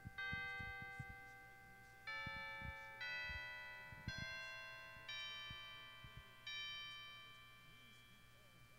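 Slow, chime-like notes played on a church keyboard instrument: about six separate notes, each struck and left to ring and fade before the next, quietly after the prayer's amen. Faint low knocks sit underneath.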